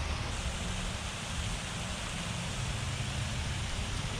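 Steady rush of runoff water pouring out of a drainage tunnel, an even hiss with a low rumble underneath.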